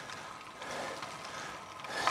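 Road bike tyres rolling over a gravel lane, a faint steady crunching noise.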